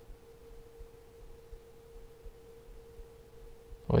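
A faint, steady, single-pitched electronic whine held at one pitch, over low room noise.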